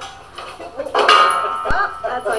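Indistinct background talking of a young girl and women, with a single sharp click near the end.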